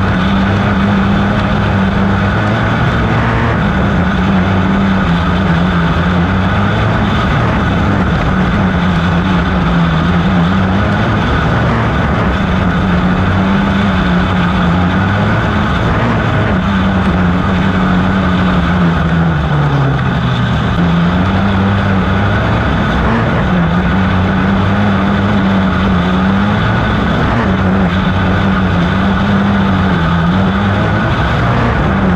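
Outlaw dirt kart's 250 engine running hard, heard onboard, its pitch dipping every three to four seconds through the corners and climbing again on the straights, with one deeper dip about twenty seconds in.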